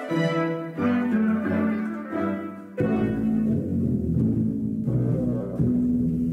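Orchestral music of sustained string chords, with heavier low notes coming in about a second in, again near three seconds, and once more near the end.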